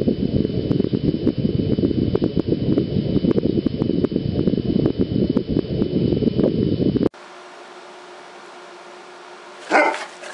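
Loud low rumbling noise with scattered clicks on a handheld camera's microphone for about seven seconds, cut off abruptly. A quiet steady hum follows, and a dog barks once near the end.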